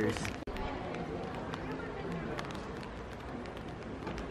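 Pedestrian street ambience: indistinct voices of passers-by and walking footsteps over a steady hiss, with a few faint clicks. The sound drops out briefly about half a second in, just after a voice trails off.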